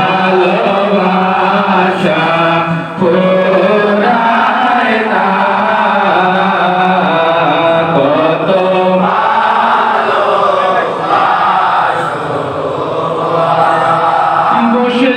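A group of men chanting together in a Sufi sama, a continuous devotional chant of many voices, with a brief dip about three seconds in.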